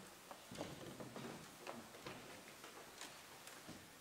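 Quiet church room tone with scattered faint clicks and taps, irregularly spaced.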